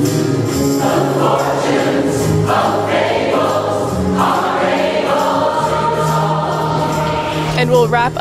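A large mixed choir of men and women singing sustained chords in harmony, with a band backing them.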